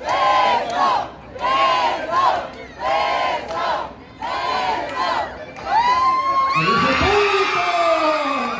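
Lucha libre crowd chanting in rhythm, about one chant a second, then a long drawn-out shout rising in pitch near the end.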